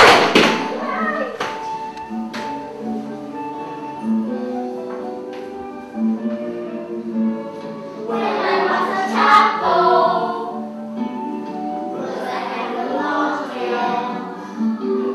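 A group of young children singing an English action song in unison over a recorded instrumental backing track, their voices strongest twice, about eight and twelve seconds in. A few light thuds near the start.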